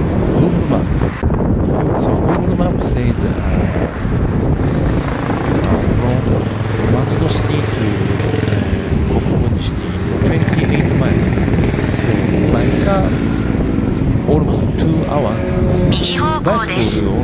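Wind rumbling on the microphone of a camera carried on a moving bicycle, with road traffic running alongside.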